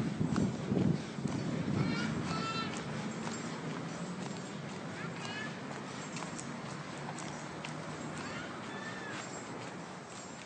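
Outdoor street ambience: a steady low hum of road traffic, with wind buffeting the microphone in the first second and a few short high chirps scattered through.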